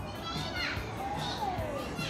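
A group of children calling out 'Banana!', their high voices rising and falling, over background music with a steady beat.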